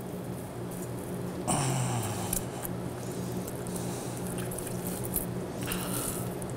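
Raw chicken skin being peeled off the carcass by hand: soft, wet squishing and tearing. A steady low hum runs underneath, and a brief low sound drops in pitch about one and a half seconds in.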